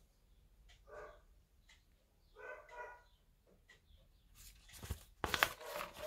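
Mostly quiet, with three faint short pitched calls in the background in the first half. Near the end comes the crinkle and rustle of a thin plastic bag being handled.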